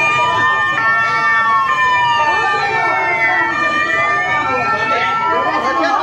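Several police sirens wailing at once, their pitches sliding up and down and crossing each other, over a background of voices.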